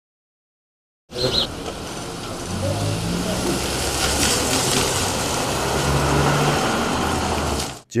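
Outdoor ambience of indistinct voices over a car engine idling. It starts about a second in and cuts off just before the end.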